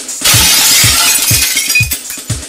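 Intro music with a thumping bass-drum beat, about two beats a second, over which a loud crashing, shattering noise starts just after the beginning and lasts about a second and a half.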